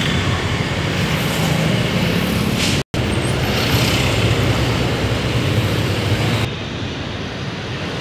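Road traffic: cars and motorcycles passing with a steady engine hum, broken by a brief dropout about three seconds in and turning quieter and duller near the end.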